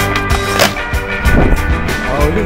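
A skateboard on brick paving under loud background music with a beat, with one sharp clack of the board about half a second in.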